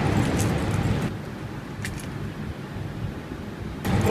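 Low outdoor background rumble that drops to a quieter hum about a second in, with two short clicks just before the middle.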